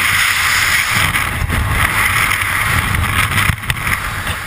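Freefall wind rushing loudly and steadily past a skydiver's camera microphone. It eases near the end as the parachute deploys and the fall slows.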